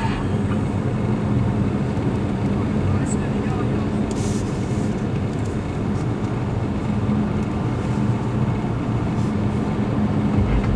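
Steady road and engine noise of a car driving, heard inside the cabin, with a low steady hum.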